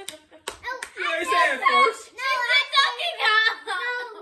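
A family laughing hard, with children's high-pitched laughter among it, and a few sharp hand claps in the first second.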